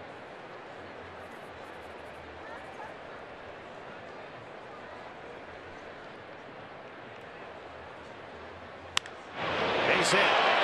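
Steady murmur of a baseball stadium crowd. About nine seconds in comes the single sharp crack of a wooden bat hitting a pitched ball, and the crowd noise swells loudly right after.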